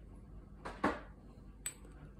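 Metal measuring spoon clinking as it scoops spice from a small glass spice jar: two quick clinks close together a little under a second in, and a light tick near the end.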